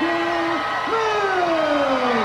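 A man's long, drawn-out call that falls steadily in pitch over about a second, heard over arena crowd noise as the winners of a wrestling match are declared.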